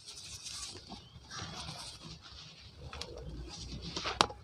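Hands squeezing and crumbling dry cement powder: soft gritty rustling in a few bouts, with one sharp click about three seconds in.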